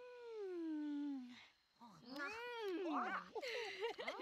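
Voices of animated cartoon animal characters making wordless vocal sounds: one long call falling in pitch, then after a short pause several wavering calls that rise and fall in pitch.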